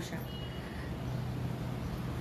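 Steady low background hum with an even wash of noise during a short pause in speech, with a faint brief high tone near the start.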